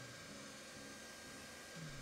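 Faint steady hiss with a thin, high, steady tone.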